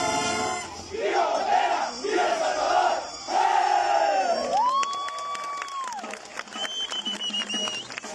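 Marching band ending a piece, then the players shouting a chant together. A long held shout follows in the middle, and a thin high wavering tone comes near the end.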